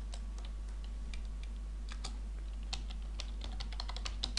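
Light, irregular clicking at a computer keyboard and mouse, getting denser near the end, over a steady low hum.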